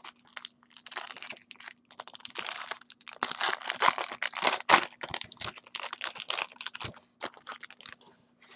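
Foil wrapper of a Bowman Chrome trading-card pack crinkling and tearing as it is opened by hand, in irregular crackles that are thickest in the middle. A few light clicks of cards being handled come at the start.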